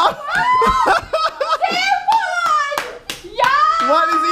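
Excited, high-pitched voices of young children and a woman, with hands clapping.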